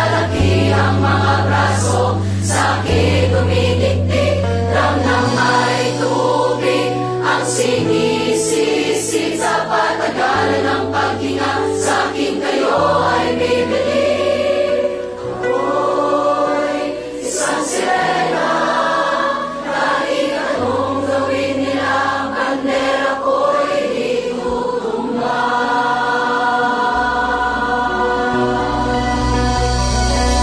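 A mass choir of several hundred young voices singing together in harmony, over low held notes that change every couple of seconds.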